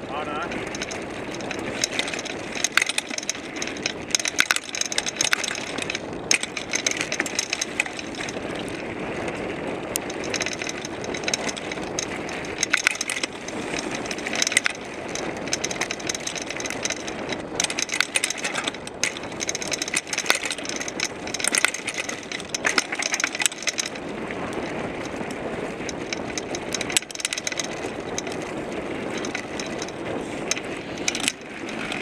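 Mountain bike ridden over a dirt singletrack, heard from a camera on the seatpost: continuous tyre and riding noise with frequent rattles and clicks from the bike over the bumps.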